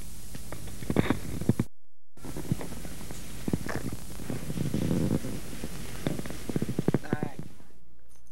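Old camcorder field audio: a steady hum and hiss with short bursts of voices, and the sound cutting out completely for a moment about two seconds in.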